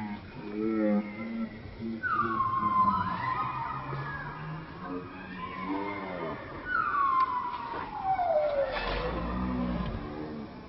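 Macaque calls: a long falling cry about two seconds in and a longer one from about seven seconds that slides steadily down in pitch over some two seconds, with shorter arched calls between them.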